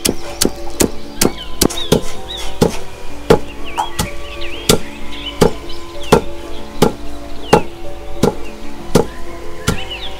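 Long wooden pestle pounding into a carved wooden mortar, a steady rhythm of dull thuds at about two to three strokes a second.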